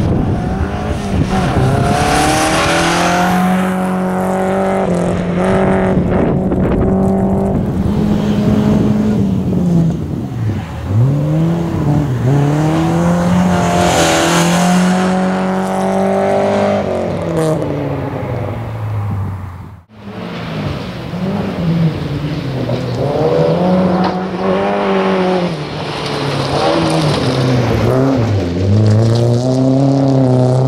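Rally car engine driven hard. The revs hold high for a few seconds, drop and climb again over and over as the driver shifts and lifts for corners. The sound drops out briefly about twenty seconds in, then the revving resumes.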